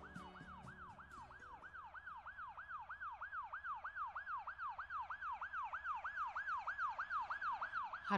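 Ambulance siren sound effect: a fast rising-and-falling wail, about three cycles a second, growing steadily louder. Music fades out under it at the start.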